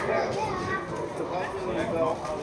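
Several people's voices shouting and calling out over one another during a football match, the calls of players and onlookers.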